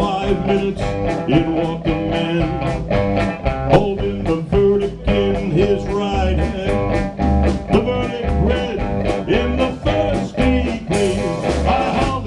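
Live blues band playing an instrumental break between verses: electric guitar lead with bent notes over electric bass and a drum kit keeping a steady beat.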